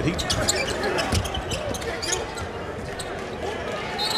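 On-court sounds of a basketball game with almost no crowd: sneakers squeaking on the hardwood and the ball bouncing during a scramble under the basket, with many short sharp squeaks and knocks.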